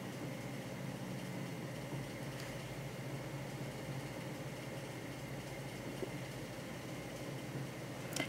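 Steady low hum with a faint hiss: quiet room tone with no distinct event.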